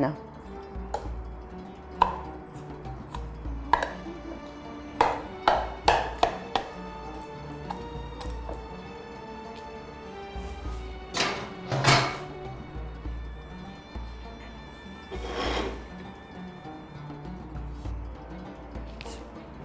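Soft background music with long held notes, over scattered sharp clicks and knocks of a knife stabbing marinated chicken in a ceramic bowl, several in quick succession about five to seven seconds in.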